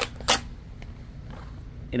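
Paper scratch-off lottery ticket handled on a wooden tabletop as the next card is picked up: two short, sharp sounds about a third of a second apart near the start, then only faint handling.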